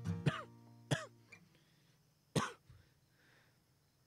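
Acoustic guitar closing a song: two last strums ring out and fade within about a second. Then a single short cough comes a little past halfway.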